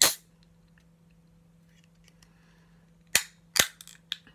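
A ring-pull drink can being opened. There is a sharp crack with a short hiss right at the start, the loudest sound, then two more sharp snaps a half-second apart a little after three seconds in.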